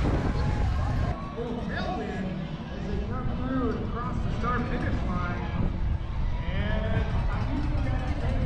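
Wind rumbling on the microphone, with indistinct voices talking in the background; the voices come through more clearly after an abrupt change about a second in.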